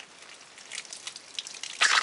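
Water starting to spurt from a newly plumbed PVC tap as its valve is opened, spattering drops onto leaves and soil, then a louder splash of spray near the end.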